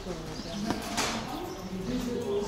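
Indistinct voices of people talking nearby, with a couple of sharp footstep taps on stone, the louder one about a second in.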